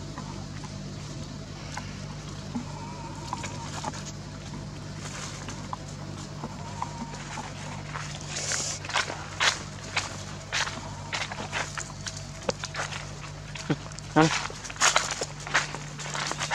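Footsteps crunching through dry fallen leaves. They begin about halfway through and grow busier, over a steady low hum. A short 'mm'-like voice sounds near the end.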